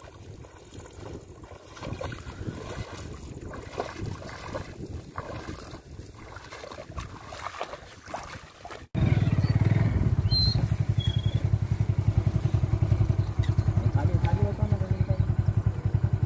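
Low, uneven sound of a man wading and tossing bait for about nine seconds. Then, after a sudden cut, a small engine runs loudly and steadily with a fast, even pulse.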